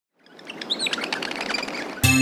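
Birds chirping over a steady outdoor background hiss, fading in about a quarter second in.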